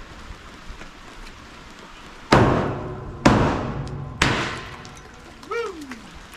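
Champagne bottle struck against the front of a pontoon boat three times, about a second apart, each strike a loud crack that fades away.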